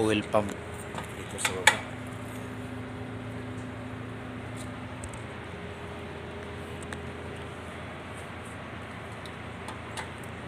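A couple of sharp metallic clinks, about a second and a half in, from hand tools or parts knocking against the stripped engine, over a steady low workshop hum.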